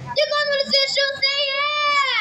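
A young street performer singing one long, high note into a handheld microphone. The note is held steady and starts to slide down in pitch at the very end.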